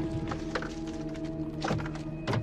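Hands searching a car's dashboard compartment: a few knocks and clicks, the loudest near the end, over background music with long held notes.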